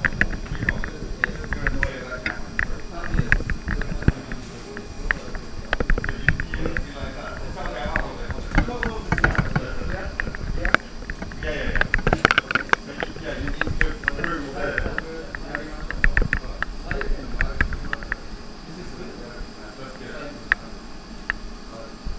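Indistinct conversation among several people, with frequent sharp clicks and knocks from equipment being handled, busiest through the middle.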